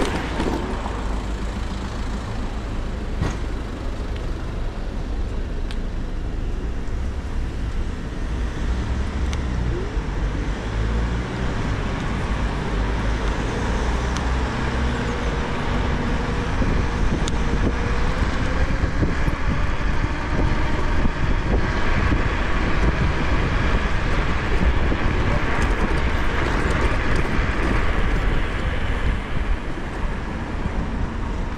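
Wind buffeting the camera microphone and tyre rumble from an electric scooter riding along a city street, with car traffic around. The rush grows a little louder in the second half as the scooter picks up speed.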